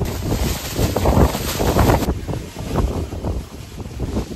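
Wind buffeting a phone's microphone in loud, gusty rumbles, heaviest in the first two seconds and then easing.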